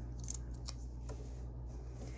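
A paper sticker being peeled from its backing sheet and handled between fingers: a few faint crackles and ticks over a steady low hum.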